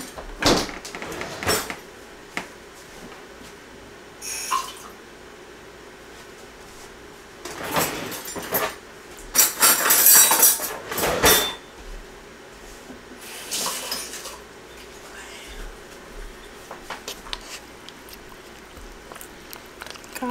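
Kitchen handling sounds: knocks and clinks of dishes and a cupboard, with short rushing bursts of tap water, the longest and loudest about ten seconds in, as water is fetched to thin a cup of oatmeal.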